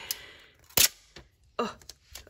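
Foil sticker roll being unrolled and handled, with a brief papery rasp, then one sharp knock a little under a second in.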